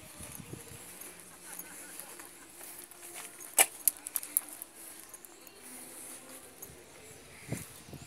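Footsteps of someone walking in sandals on asphalt, with a cluster of sharp clicks about halfway through.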